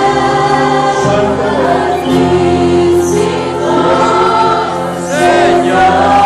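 Congregation singing a worship song together, loud and sustained.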